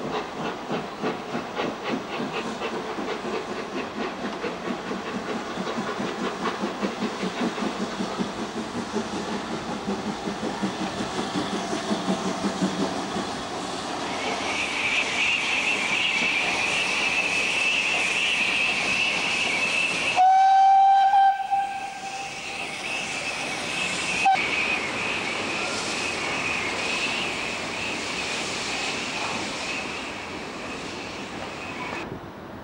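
Steam locomotive working, its exhaust beats coming in a steady rhythm through the first half. A high steady hiss joins about halfway. The whistle sounds once, loud, for about a second and a half about two-thirds of the way in, with a short toot a few seconds later.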